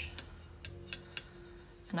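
A few light clicks of a paintbrush tapping and working in the mixing well of a metal watercolor palette tin, over soft background music.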